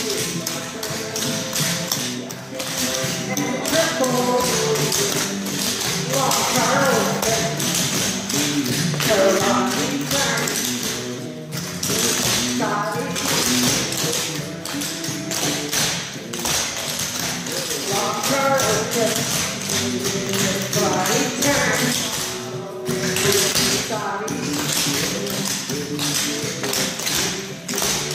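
Tap shoes' metal taps striking a dance board in quick, dense rhythmic patterns of clicks, over music.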